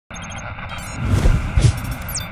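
Sound effects for an animated logo intro: a quick run of five or so high electronic beeps, then a swelling whoosh with two deep booming hits about half a second apart.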